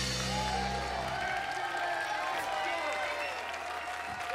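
A jazz band's final chord ringing out and fading away in about the first second, while an audience applauds with voices calling out.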